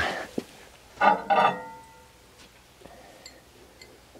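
A drinking glass of water lifted off a microwave oven's glass turntable tray, knocking against it twice about a second in with a short ringing clink.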